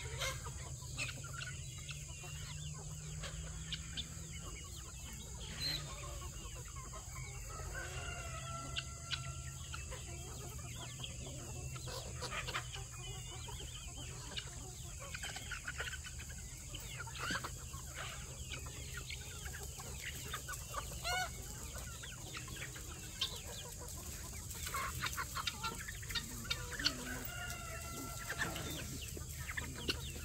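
A large mixed flock of free-range chickens clucking and calling while foraging: many short scattered clucks, with a few longer drawn-out calls now and then, over a steady background hum.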